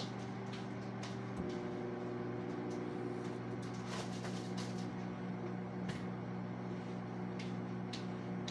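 A microwave oven running with a steady electrical hum, defrosting frozen food; its hum shifts slightly about a second and a half in. Scattered light clicks and knocks of things being handled on the counter.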